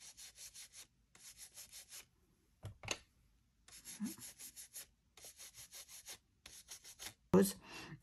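Oval blending brush rubbed in quick back-and-forth strokes over a plastic stencil on paper, blending blue ink onto the page. It gives a soft, rhythmic brushing in several short runs with brief pauses.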